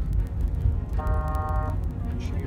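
Steady low road and engine rumble inside a moving car's cabin, with one short, steady car-horn toot about a second in that lasts under a second and stops abruptly.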